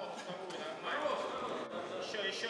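Men's voices calling and shouting around a fight cage during a grappling exchange, with no clear words.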